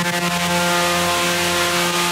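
Techno in a breakdown: a held synth chord over a wash of noise, with no kick drum.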